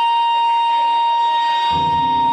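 Live saxophone holding one long, steady high note, with the band's lower notes coming in underneath near the end.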